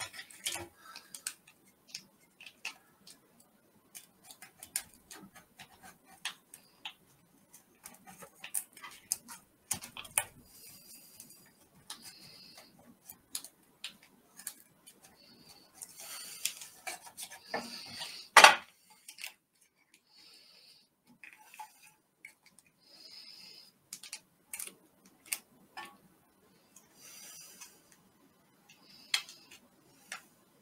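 MRE food packets and a knife handled over a stainless steel compartment tray: scattered small clicks and taps of metal and plastic, with short bursts of plastic packaging rustling and one louder click a little past halfway.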